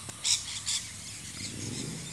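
Two short, high bird chirps, the first about a third of a second in and the second just after, over faint outdoor background noise.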